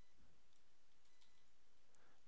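Near silence: faint room hiss with a few soft, isolated computer keyboard clicks.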